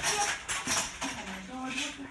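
Paper rustling and crackling as greeting cards and their paper are handled and opened, with a voice saying "oh my" near the end.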